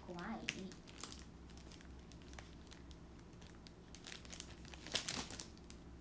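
Faint crinkling and scattered small clicks close to the microphone, with a louder cluster of crackles about five seconds in: handling or rustling noise at the phone while nobody speaks.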